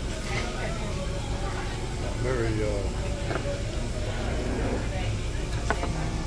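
Restaurant dining-room background: a steady low hum with faint, indistinct voices of other diners and a few brief words nearby.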